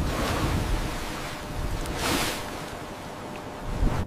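Sea waves surging with wind, swelling louder twice, about two seconds apart.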